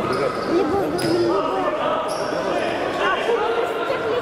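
Indoor futsal play: the ball is kicked and bounces on the hall's wooden floor, under a continuous mix of voices and shouts from players and spectators in the hall.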